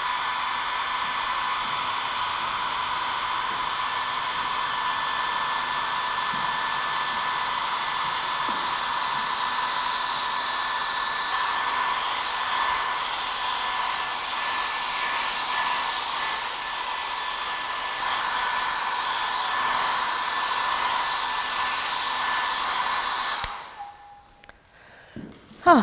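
Small handheld hair dryer running steadily on a low setting, a steady rush of air with a high whine, blowing over wet watercolour paint to dry it. It is switched off shortly before the end.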